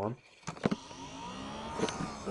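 A mechanical whir, starting with a click about half a second in, its pitch curving gently up and then down, with another click near the end.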